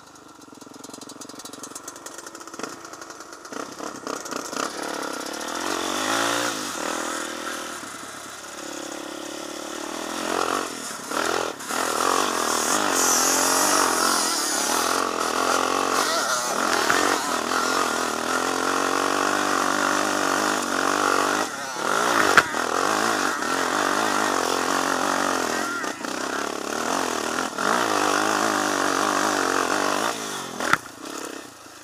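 ATV engines under hard throttle on a steep hill climb, mainly the camera quad's Suzuki Z400 four-stroke single, its pitch repeatedly climbing and dropping with throttle and gear changes. A sharp knock stands out about two-thirds of the way through.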